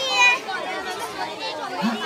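Crowd chatter: many people talking at once, with one nearer voice briefly louder at the start.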